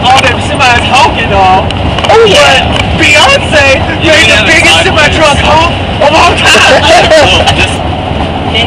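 Several people talking and laughing over one another inside a moving vehicle, with steady road and engine noise underneath.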